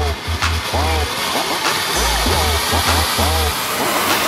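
Steady hissing spray of a ground fountain firework, heard under a song with a heavy, rhythmic bass line.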